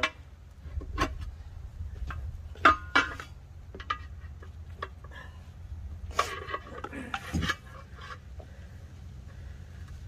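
Steel tire iron clanking and scraping against the steel rim of a Farmall Super A tractor wheel while an old tire is pried off it. The sharp metal knocks come irregularly, several seconds apart, and the loudest falls about three seconds in.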